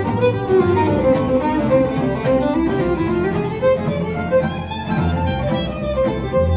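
Swing fiddle playing a melody line over a steady strummed acoustic-guitar rhythm and a walking upright bass, in an unamplified acoustic string band.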